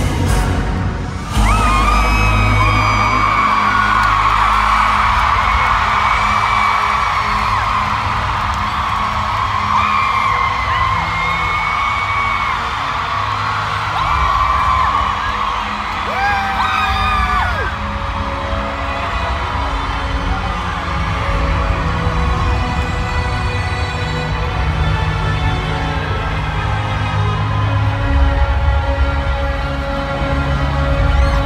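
Amplified arena concert music: a heavy bass hit about a second and a half in starts a dramatic instrumental with deep pulsing thuds. A crowd screams and cheers over it for the first half, then the music carries on with sustained tones.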